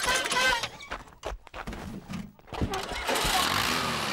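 Cartoon sound effect of a small farm tractor's engine starting and then running steadily, the running sound taking over a little before three seconds in. A brief voice-like call comes at the start.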